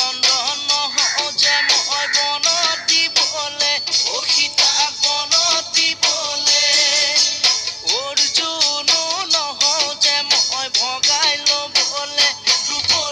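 Assamese Bihu song: a voice sings a winding melody over a fast, steady dhol drum beat.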